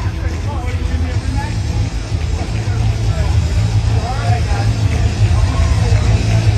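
Indistinct voices and crowd chatter over a heavy, steady bass from music playing on the hall's sound system.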